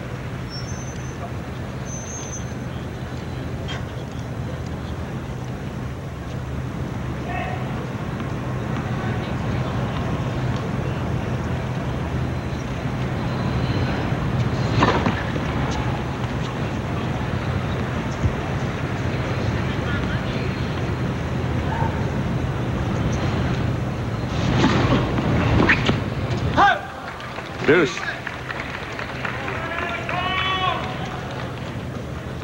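Tennis crowd murmur on an old television broadcast over a steady low hum, with a sharp knock about halfway through and a few sharp racket-on-ball knocks and brief crowd sounds during a rally near the end.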